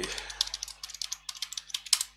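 Computer keyboard being typed: a rapid run of key clicks as a password is entered, with a sharper keystroke near the end.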